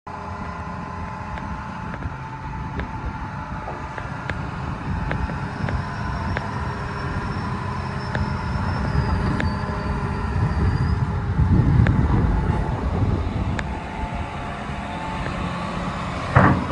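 The diesel engine of a John Deere 250G LC crawler excavator running at a steady idle, with a low rumble that swells a little about three quarters of the way through. Light regular crunches about every 0.7 s sound over it, footsteps on gravel.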